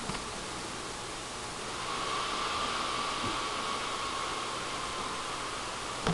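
HP dv6 laptop's cooling fan running as the computer restarts: a steady hiss that grows a little louder about two seconds in, with a faint whine coming up at the same time.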